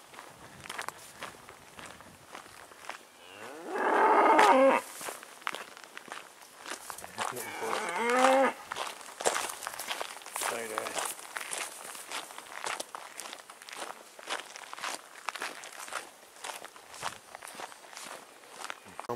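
Cattle mooing: a long, loud moo about four seconds in, a second wavering, falling moo around eight seconds, and a fainter one near eleven seconds, a cow calling for its stray bullock. Short scuffing steps on the path come and go between the calls.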